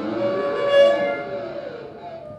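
Saxophone holding a long note that bends up in pitch and back down, swelling to its loudest about a second in and then fading.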